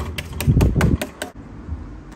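Kitchen sponge dabbing wet paint onto a table top: a quick run of sharp taps, about six a second, that stops about a second and a half in. A brief low rumble sits under the taps near the middle of the run.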